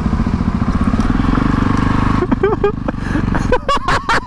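Motorcycle engine running at low, steady revs with a rapid, even pulse as the bike rolls along a gravel track.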